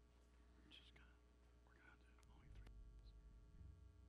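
Near silence: room tone with faint, distant murmured voices and a low hum that comes up a little about halfway through.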